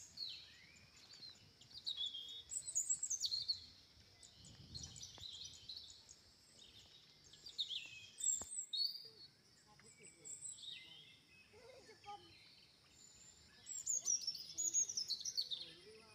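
Small birds chirping and calling, in clusters of quick high notes and short falling sweeps, over a steady high-pitched background.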